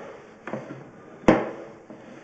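A single sharp knock with a short ring-out a little past halfway, after a fainter tap, over a low background hum from the sewer inspection gear.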